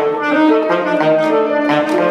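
Alto saxophone and grand piano playing together in a contemporary chamber piece. Held saxophone notes sound over sharp attacks that come roughly twice a second.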